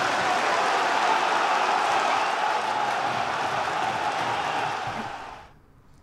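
Large football stadium crowd heard as a steady wash of crowd noise, fading out about five seconds in.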